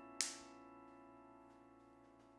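The last chord of a Yamaha digital piano dying slowly away at the end of the song. A moment in comes one short, sharp slap of two hands meeting in a handshake.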